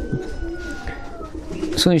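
Domestic pigeons cooing low and steadily.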